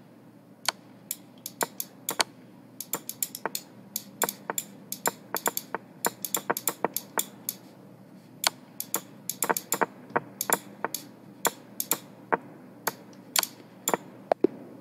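Rapid, irregular clicks, several a second, from online blitz chess played at speed with a computer mouse in a time scramble: the mouse clicks and the game's move sounds.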